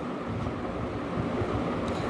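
Steady, even background noise, a low rumbling hiss with no distinct events, in a short pause between spoken sentences.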